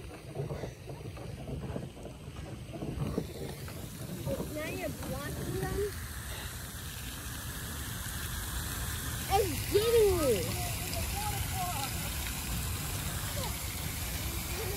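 Steady hiss of a pond fountain's falling spray, building in after a few seconds, over wind rumbling on the microphone.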